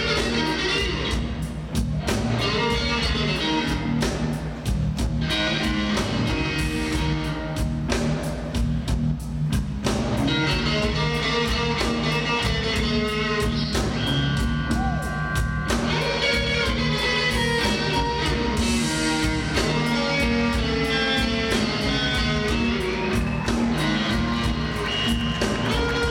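Electric blues guitar soloing live, with bent and sustained notes over a band's bass and drums.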